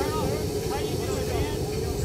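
Jet aircraft engine running steadily, a constant tone over a low rumble, with indistinct voices around it.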